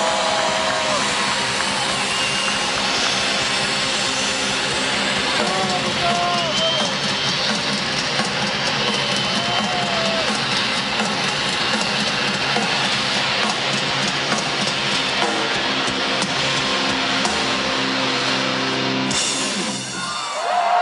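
Heavy metal band playing live at full volume, distorted guitars holding a dense ending wash with a few short wails over it. The wash stops abruptly about a second before the end.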